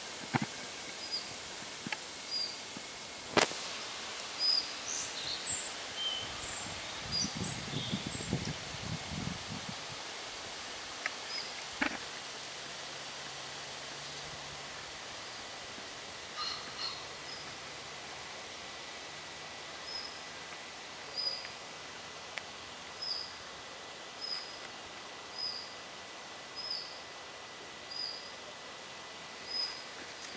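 Short high chirping calls repeated about every second and a quarter, steadiest in the second half, over quiet outdoor ambience; the recordist thinks they may be a hen pheasant with her chicks, but is not sure. A low rustle near the middle and a couple of sharp clicks, the loudest near the start, come from the leaves and camera being handled.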